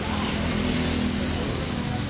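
A motor vehicle's engine running close by: a steady low hum over street noise.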